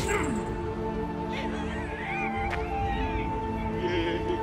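Film-score music of sustained drone tones. Over it come high, wavering cries from a jeering crowd, with a sharp strike at the very start and another about two and a half seconds in.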